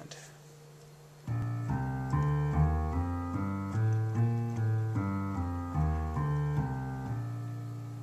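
Piano played with the left hand: a B-flat major scale rising one octave from B-flat and back down again, at an even pace of about two and a half notes a second. It starts about a second in and ends on a held low B-flat.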